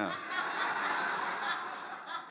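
A congregation laughing: a spread of scattered chuckles across the room that dies away near the end.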